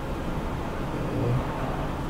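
Steady low background rumble, with a brief faint hum of a voice a little over a second in.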